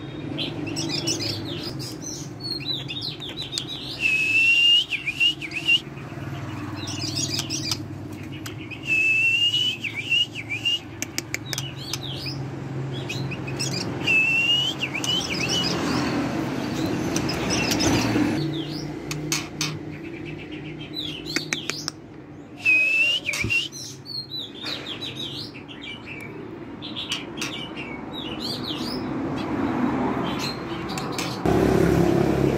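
White-rumped shama, a variegated white-speckled form, singing short, varied whistled phrases every few seconds, several with a bright rising note, over a steady low hum.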